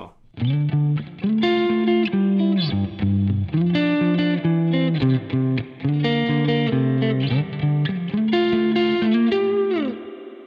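Fender Stratocaster played clean through an Axe-FX II modelled Super Verb amp and cab, pushed by a compressor boost and with a medium spring reverb. It plays a line of ringing sustained notes and chords that starts about half a second in and ends on a note gliding down in pitch.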